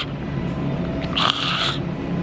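A woman's short, breathy throat noise about a second in, unvoiced and without words, over the steady hum of a large store.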